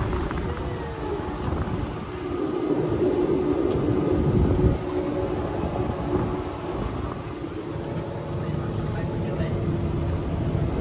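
Boat motors running at low speed with a steady hum, over wind rumble on the microphone; the hum swells a little a few seconds in, then settles.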